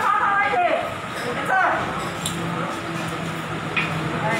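People's voices speaking, not clearly made out, with a steady low hum in the second half.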